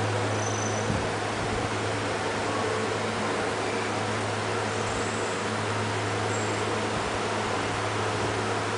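Steady room noise: an even hiss with a constant low hum underneath.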